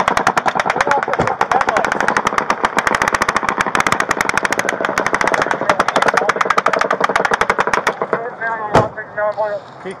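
A long sustained burst of fully automatic gunfire, about nine or ten shots a second, which stops about eight seconds in. Shouting voices follow, with a single loud sharp bang near the end.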